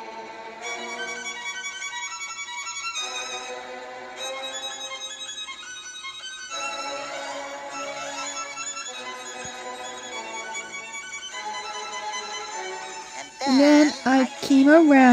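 Background music led by a fiddle, playing a melody in short phrases that change every few seconds.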